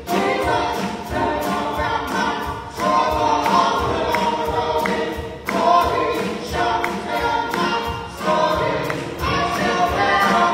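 A small gospel praise team of several voices singing a worship song together, backed by a live band with a steady drum beat.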